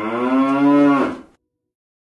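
A cow mooing: one long call of about a second that rises slightly in pitch and then falls, cut off suddenly.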